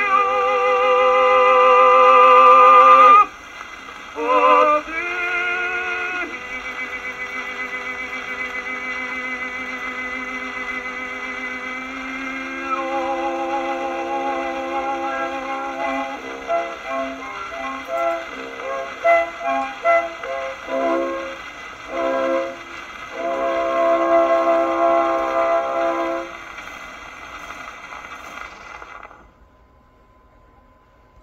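Acoustic-era Victor 78 rpm shellac record of a tenor and baritone operatic duet with orchestra, played on a wind-up Columbia Grafonola 50 phonograph, with its surface hiss. The singing ends on a long held note with vibrato, a brief sung phrase follows, then the orchestra plays the closing chords. Only surface noise remains before the sound cuts off near the end.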